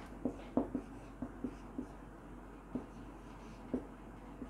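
Marker pen writing on a whiteboard: a run of short, irregular strokes and taps as letters are written.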